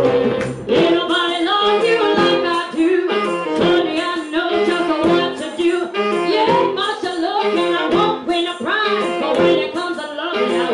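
Live band playing a song with a woman singing lead over electric guitar and a steady beat.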